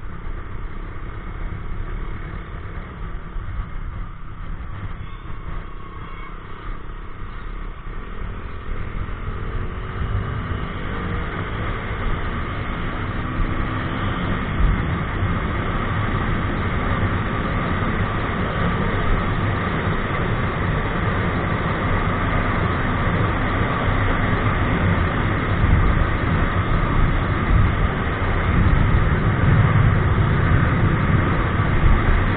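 Motorcycle engine running under wind rush on the microphone, both growing gradually louder as the bike picks up speed.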